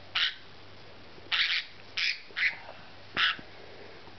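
A cockatiel, held wrapped in a towel for wing clipping, squawking in five short harsh screeches over about three seconds.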